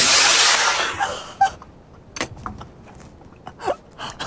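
Model rocket motor igniting at liftoff: a sudden loud rushing hiss that fades away over about a second and a half as the rocket climbs.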